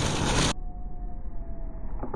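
Muffled outdoor background noise: a low rumble with a faint steady hum that slowly falls in pitch. About half a second in, the sound abruptly turns duller as the treble drops away.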